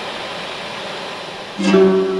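A steady, even hiss-like background, then about one and a half seconds in a plucked string instrument sounds a loud, sustained note, opening a piece of traditional folk music.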